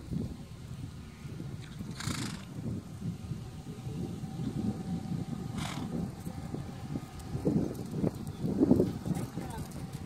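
A horse's hooves on soft sand arena footing as it trots and then walks, a loose, irregular run of muffled thuds. There are a couple of brief hissy bursts and a few louder low sounds near the end.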